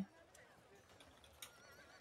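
Near silence: faint room tone with a few soft ticks, and a faint wavering tone in the second half.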